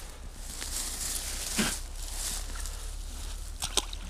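Steady wind noise on the microphone with dry reeds rustling on the bank, then near the end a short, sharp splash as a small pike is dropped back into the river.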